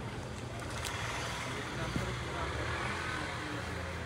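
Steady low background rumble with faint voices.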